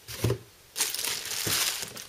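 A cardboard retail box being picked up and moved aside: a thump about a quarter second in, then about a second of rustling and scraping cardboard.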